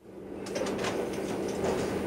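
Background ambience laid under a course listening recording, fading in before its first conversation: a steady low hum with a haze of noise and scattered light clicks.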